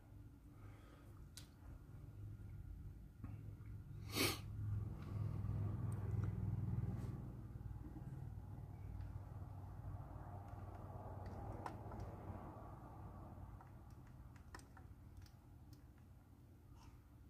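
Faint handling sounds and small clicks of plastic model parts being fitted by hand, over a low steady hum, with one short hissing noise about four seconds in.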